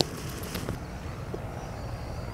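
Steady outdoor background noise with a brief high rustle at the start and faint high chirps in the second half.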